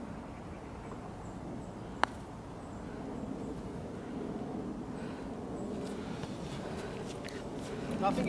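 Golf club striking a golf ball: one sharp click about two seconds in, over steady outdoor background noise.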